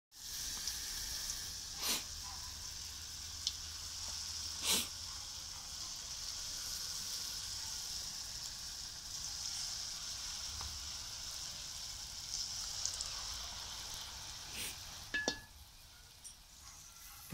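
Hot oil sizzling steadily in a wok as spoonfuls of batter deep-fry into fritters, with a few short sharp taps about two and five seconds in and again near the end.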